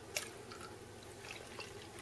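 Yeast starter poured from a glass jar in a thin stream into a bucket of honey must: faint trickling and dripping into the liquid, with a light click just after the start.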